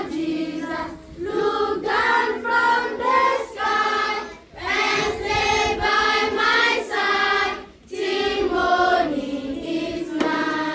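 A group of children singing together in unison, in sung phrases with brief breaks about a second, four and a half and eight seconds in.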